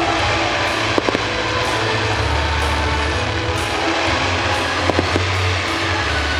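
Fireworks-show soundtrack music playing loudly, with a few sharp firework pops about a second in and again near five seconds in.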